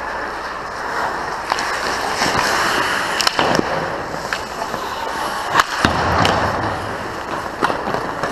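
Ice hockey skates carving and scraping on the ice around the net, with sharp clacks of sticks and puck; the loudest hits come about three seconds in and again a little before six seconds.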